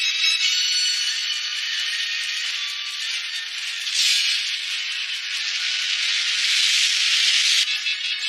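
A steady hissing rush of noise with faint music under it. A sudden, louder rush starts about four seconds in, swells, and cuts off abruptly near the end. The sound is thin, with no bass at all.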